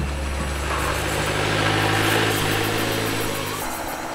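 A truck's engine running as it climbs a cobblestone road, with the noise of the engine and tyres growing louder toward the middle and easing near the end.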